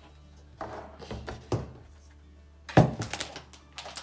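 Plastic seed-starting trays and other items being pushed aside and set down on a table: soft handling noises, then one sharp thunk a little past halfway and a few lighter knocks after.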